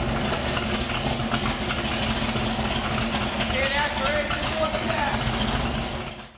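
Freshly installed BluePrint 306 small-block Ford V8 with a Holley carburetor, idling steadily shortly after being started, then fading out at the very end.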